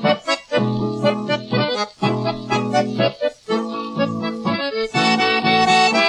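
Accordion playing an instrumental passage between the verses of a Brazilian caipira country song, in chords broken by short rhythmic gaps, with no singing.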